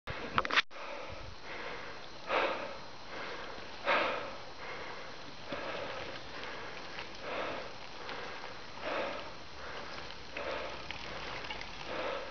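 A person breathing close to the microphone, soft puffs of breath about every one and a half seconds, with a sharp click near the very start.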